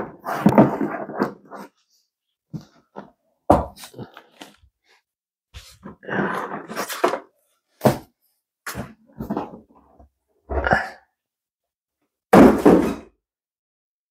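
Cardboard box and foam packaging of an RC plane being opened and handled: a run of separate thunks, scrapes and rustles with short silences between, the loudest near the end.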